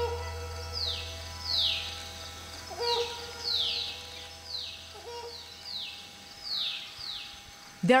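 Forest bird calls: a repeated series of short falling whistled notes, mostly in pairs about a second apart. A low drone fades out under them over the first several seconds.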